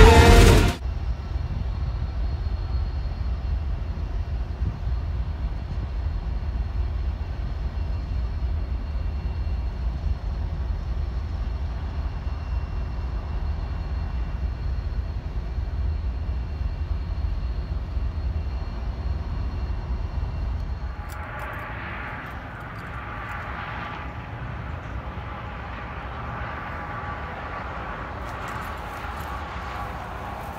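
Diesel freight locomotives running, a steady low engine rumble with faint steady whine tones. About two-thirds of the way through it gives way to a quieter, more distant train sound with scattered light ticks near the end.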